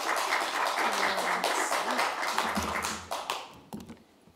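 Applause from a room of people, many hands clapping together, fading away near the end.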